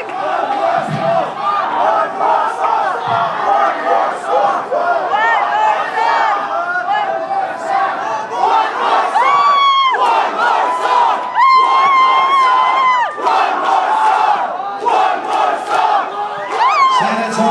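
Concert crowd shouting and cheering with no music playing, many voices at once. One or two voices close by hold long, high yells, once about nine seconds in and again for nearly two seconds around twelve seconds in.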